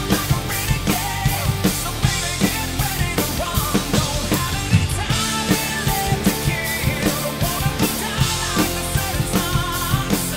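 Rock drum kit played hard along to a full-band rock recording: a steady beat of kick and snare hits, several a second, under crashing cymbals, with a lead line wavering in pitch above the band.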